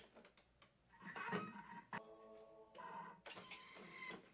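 A Thermomix kitchen machine runs its blade to chop halved onions on a short, fast setting. It makes faint whirring with changing pitches that comes in short spells.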